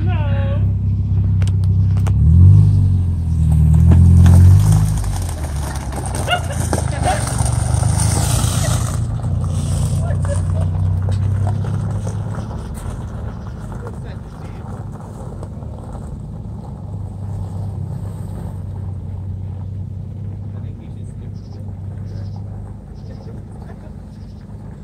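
Car engine of a half-cut car (the front half of a car on caster wheels) revving hard about two seconds in, then running steadily as the car drives off across gravel. It grows gradually fainter as it moves away.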